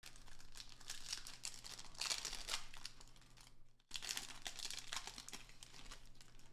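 Plastic wrapper of a 2023 Panini Mosaic football card pack being torn open and crinkled by hand, a dense crackling that swells around the middle and again after a brief break.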